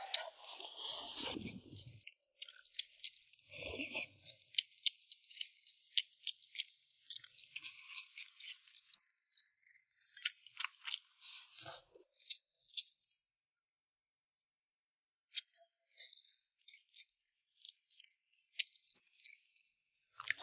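Close-miked eating sounds: soft chewing and mouth clicks with chopsticks tapping and scraping a ceramic rice bowl, many small sharp clicks spread through. Underneath runs a steady high-pitched drone of insects.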